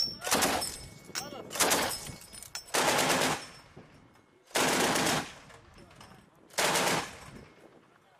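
Heavy machine guns firing five short bursts of automatic fire, about one to two seconds apart.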